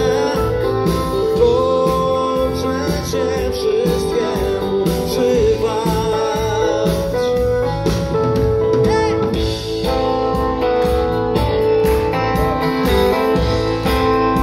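Live pop band music through a concert PA, heard from the audience: electric bass and keyboards over a steady beat, with a sustained melody line.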